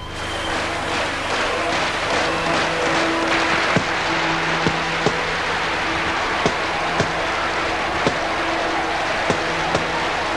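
Boxing-fight soundtrack: held music notes over the steady noise of a cheering crowd, with sharp punch hits landing about once a second from about four seconds in.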